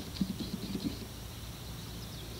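A few faint light clicks and handling sounds as small lead buckshot pellets are picked up and gathered in the hand, over a quiet outdoor background.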